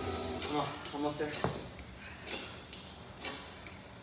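Brief fragments of a person's voice, then a few sudden knocks roughly a second apart, echoing in a large room.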